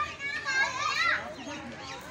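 Children's voices: several kids talking and calling out in high voices, loudest around the middle.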